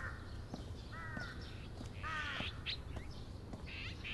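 A bird calling outdoors: three short pitched calls about a second apart over quiet background.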